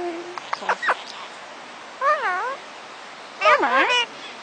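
Indian ringneck parakeets talking in mimicked human voices: a few quick, sharp squeaks about half a second in, then a wavering 'oh' near the middle, and a louder, falling, wavering 'oh' near the end.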